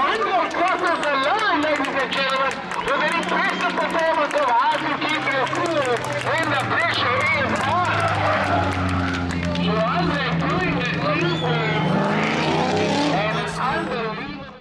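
Drift car engine held at high revs through a slide, coming in strongly about five seconds in and rising in pitch near the end, under a track commentator's voice.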